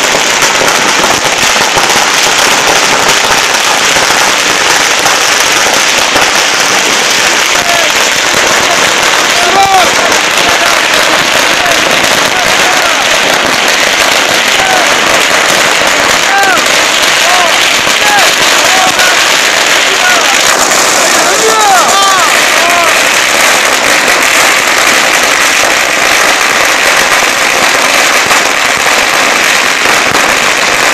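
A 100,000-shot firecracker string burning on the pavement: a long, unbroken run of rapid bangs that goes on without a pause.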